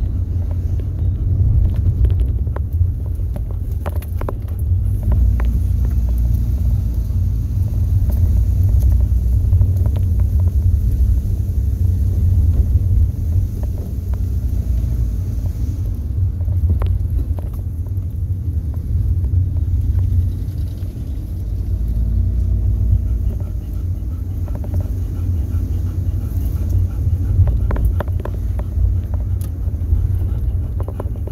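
Steady low rumble of a car driving along a road, engine and road noise, with a few light knocks.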